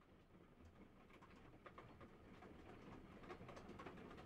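Near silence: a very faint background ambience slowly fading in, with scattered soft clicks.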